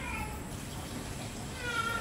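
Two short high-pitched calls: one falling right at the start, and a longer one near the end that rises and then holds steady.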